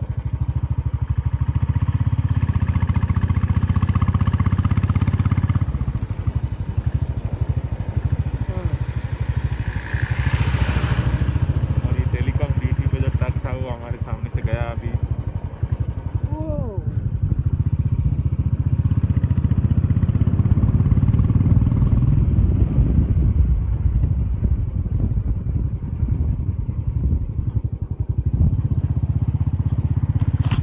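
Motorcycle engine running steadily while under way, a continuous low rumble with wind noise on the microphone.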